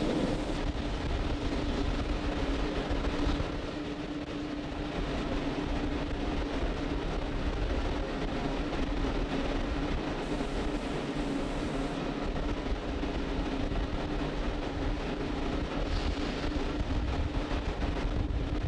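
Steady launch-pad ambience of a fuelled Falcon 9 venting liquid oxygen: an even hiss and low rumble with a constant hum underneath.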